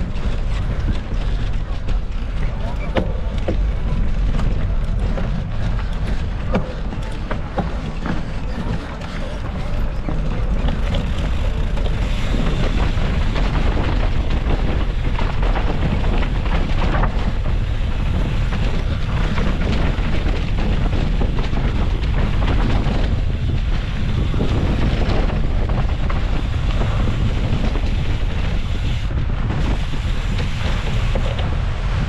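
Wind rushing over the microphone of a camera riding on a mountain bike down a rocky dirt trail. Under it run the tyres on dirt and stone and the bike's rattling knocks, which are thickest in the first third.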